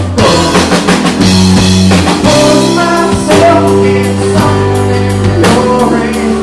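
Live band playing a country-rock song: a drum kit keeping a steady beat under strummed acoustic guitar, with a man singing.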